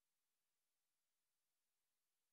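Silence: the audio is essentially empty, with only a very faint hiss.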